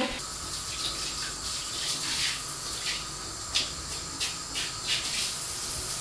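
Handheld shower head spraying a steady stream of water onto shower tiles, rinsing them, with a few brief louder splashes as the spray moves.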